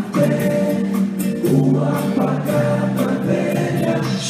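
A live rock band playing: guitars, keyboards and drums on sustained chords over a steady beat, with held vocal harmony.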